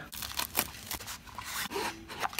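A small cardboard retail box being opened by hand: a seal sticker peeled off and card and paper inserts rustling and scraping, in an irregular run of short crackles.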